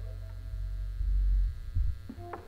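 Low electrical hum from a stage sound system, swelling louder about a second in.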